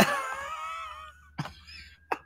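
A person's drawn-out, high vocal sound, wavering in pitch for about a second, then a brief sharp click about a second and a half in.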